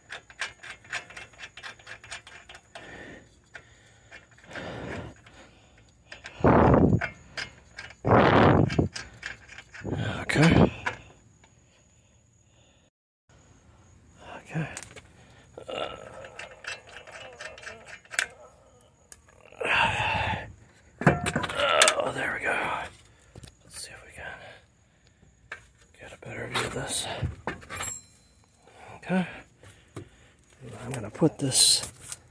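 Lug nuts being spun off a car's alloy wheel by hand, with light metallic clicks and clinks, and a few loud knocks and thuds as the wheel is handled and pulled off the hub.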